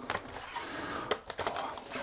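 Light handling noise of a cardboard box being packed: faint rustling with a few small clicks and knocks as the receiver's cables go into the box.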